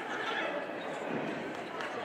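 Audience in an auditorium cheering, with whoops and shouted voices mixed into the crowd noise.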